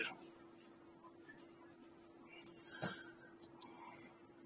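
Near silence: faint room tone with a steady low hum, and one brief faint sound about three seconds in.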